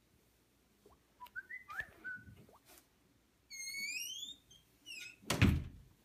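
A rising whistle-like tone lasting about a second, then a loud thud about five and a half seconds in.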